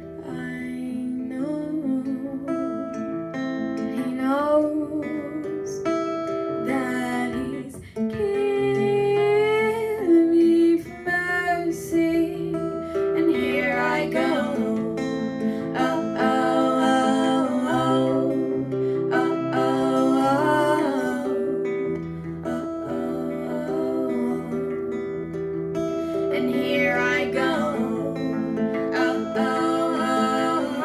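Acoustic guitar played live with a female voice singing over it; the voice comes and goes, with long held, wavering notes.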